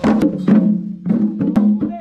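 Drums beaten in sharp, uneven strikes, several in two seconds, over a steady held pitched tone.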